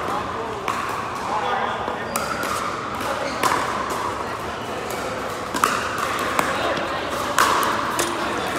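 Pickleball paddles striking a plastic pickleball: about half a dozen sharp, irregularly spaced pops that echo in a large indoor hall, the loudest two in the second half. A steady murmur of players' voices runs underneath.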